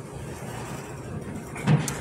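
Room tone: a steady low hiss and hum in a pause between spoken words, with a short burst of a man's voice near the end.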